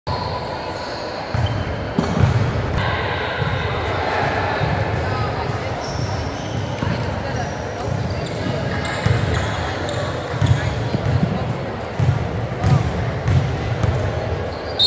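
Repeated thuds of a basketball bouncing on a hardwood gym floor, with people talking in the background, echoing in a large gym.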